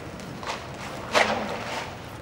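A horse's hooves stepping off a plastic tarp among PVC poles: a faint knock about half a second in, then a louder brief scrape about a second in.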